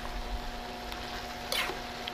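Metal spatula stirring and scraping spaghetti in a wok over a steady hum and faint frying noise, with one sharp, high scrape about one and a half seconds in.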